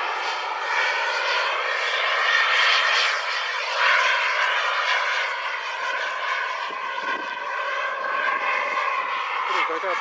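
Radio-controlled model MiG-29 jet flying overhead: a steady, high whine of several tones from its motor, shifting in pitch as it passes and loudest about four seconds in.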